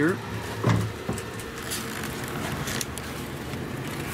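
Steady background hum with one short knock a little under a second in.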